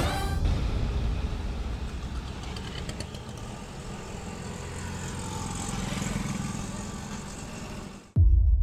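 Road traffic on a busy city street: cars, motorbikes and auto-rickshaws passing in a steady rumble and hiss. It swells around six seconds in and cuts off suddenly at the end.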